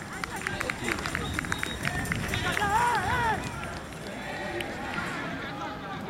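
Voices calling out across a football pitch during play. A quick string of sharp clicks comes in the first two seconds, and one loud, wavering shout stands out about three seconds in.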